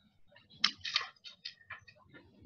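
Scattered short scratching and rustling sounds, several a second: pens drawing on sticky notes and paper being handled by people sketching.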